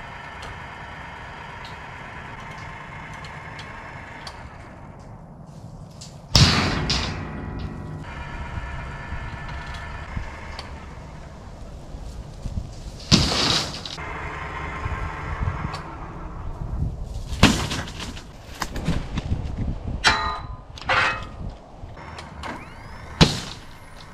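Truck-mounted crane running with a steady whine as it lifts 3/16-inch steel plates, then the plates clanging and ringing as they are set down against one another: one loud clang about six seconds in, another a little past halfway, and several sharper knocks and clangs near the end.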